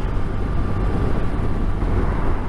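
Touring motorcycle running at road speed on a wet road: a steady low engine drone under wind and tyre noise on the bike-mounted camera's microphone.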